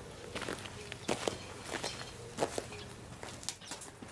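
Footsteps on a concrete floor: a scattering of irregular steps and light knocks.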